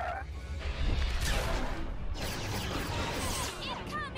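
Sci-fi space-battle film soundtrack: a deep, steady rumble under swelling, noisy whooshing effects and orchestral score, loudest about a second in.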